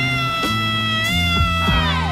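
A man's long, high-pitched wailing cry, held steady and then falling off near the end, over music with a steady bass line.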